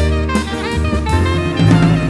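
Live jazz combo playing: an alto saxophone leads with a moving melody over double bass, drum kit and electric guitar.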